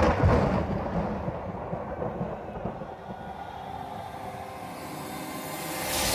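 Dramatic recorded backing track for a stage dance: a loud hit dies away into a low, rumbling drone with faint held tones, then a whoosh rises at the very end.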